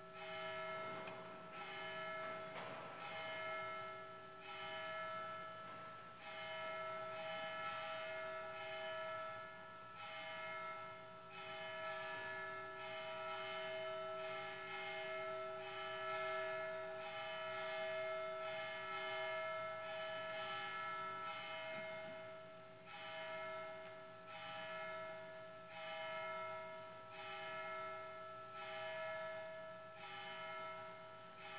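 Church bells ringing a slow tune, one struck note about every second, each ringing on under the next.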